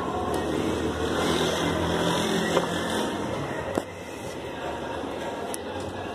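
A motor vehicle engine running steadily under street noise, with a few sharp knocks. The engine sound drops away about four seconds in.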